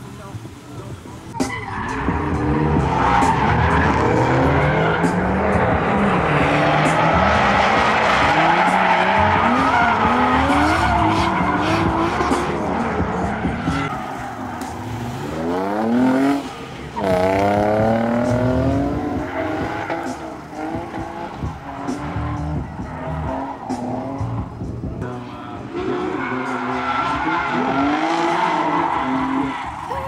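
Nissan 240SX's swapped-in VQ V6 revving hard while drifting, its pitch repeatedly climbing and falling, with tyre squeal. It comes in loud about a second and a half in, with one steep rising rev near the middle.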